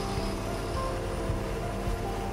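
Heavy tracked forestry machine's diesel engine running steadily while it drives a screw pile into the ground, with background music over it.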